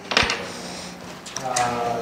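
A sharp knock just after the start, then light clattering, as an electric motor is shifted by hand on its plywood mount.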